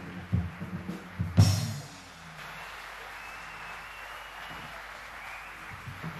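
Live big band jazz ending its piece: low brass and bass notes over drums, closing on one loud drum-and-cymbal hit about a second and a half in. After that comes a faint, steady wash of noise.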